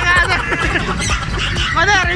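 A woman's high-pitched laughter and voices over background music with a steady low beat.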